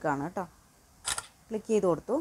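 Smartphone camera shutter sound: one short, crisp click about a second in as the document photo is captured, between bits of speech.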